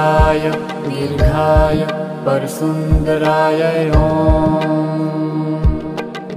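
Hindu mantra chanting set to devotional music: a voice holds long sung notes over a steady drone, with soft low drum beats every second or so.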